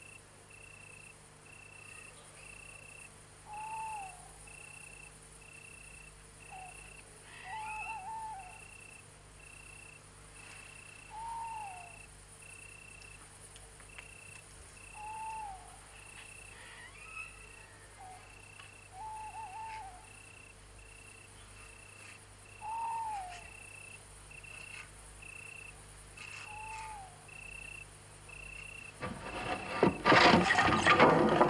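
Night ambience: a cricket chirps in a steady, evenly spaced pulse. Every few seconds an owl gives a short falling call, sometimes two or three in quick succession.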